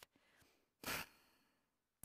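A woman's single short breath, a sigh-like exhale or intake about a second in, amid near silence.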